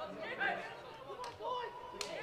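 Several men's voices shouting and calling over one another on a football pitch, picked up by pitch-side microphones with no crowd noise. A single sharp knock sounds a little over a second in.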